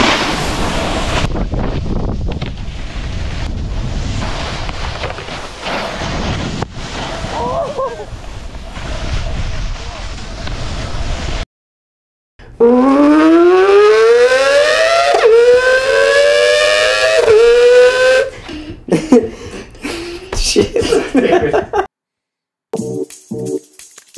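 A snowboard running over packed snow, a steady scraping hiss with wind on the microphone. It cuts off about halfway through. After a moment of silence, a pitched, horn-like tone slides upward three times, one long rise and then two shorter ones.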